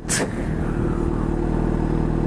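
A Yamaha FZ6's 600cc inline-four engine idling steadily through an aftermarket SP Engineering dual carbon exhaust. A brief sharp knock sounds right at the start.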